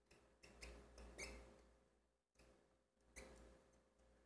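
Faint squeaks and scratches of a marker writing on a whiteboard, in a few short strokes in the first second and a half and once more just after three seconds.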